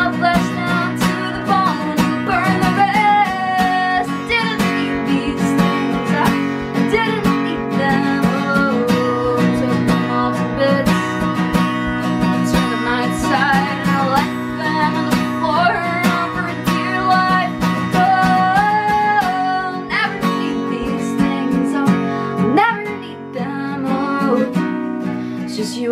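Steel-string acoustic guitar with a capo, strummed steadily, with a woman's singing voice over it in stretches.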